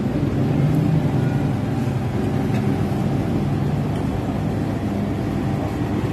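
Steady low mechanical rumble with a faint hum, unchanging throughout.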